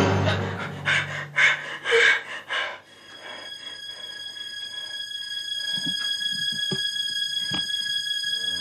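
Suspense film soundtrack: a music cue fades out in a few short loud bursts, then a steady high-pitched ringing tone holds, with a few soft low thumps about a second apart near the end.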